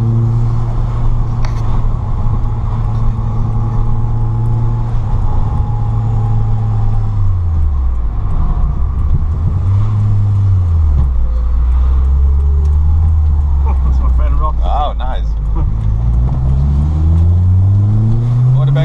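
Turbocharged Peugeot 205 Dimma engine heard from inside the cabin while driving. The engine note holds steady, drops low about seven seconds in, rises and falls once more around ten seconds, runs low and steady, then climbs in pitch near the end as the car accelerates.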